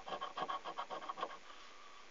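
A coin scratching the latex panel off a scratchcard in quick, short strokes, about eight a second, stopping about a second and a half in.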